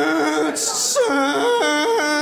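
A man's voice imitating a lorry: a steady held hum, a short hiss about half a second in, then the hum jumping up and down in pitch in sudden steps.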